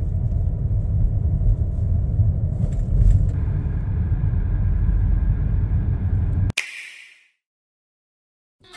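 Car driving along a road, heard from inside the cabin: a steady low engine and road rumble. About six and a half seconds in it stops abruptly with a sharp click and a brief hiss.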